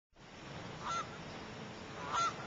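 Outdoor ambience fading up from silence, with a single short honking bird call just under a second in.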